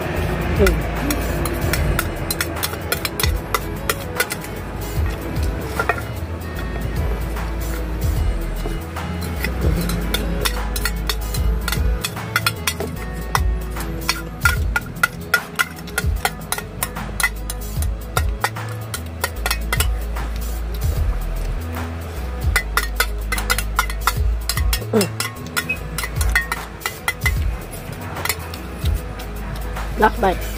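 Metal spoon and chopsticks clinking and scraping against a stainless steel bowl, with mouth sounds of eating, in many short irregular clicks over background music.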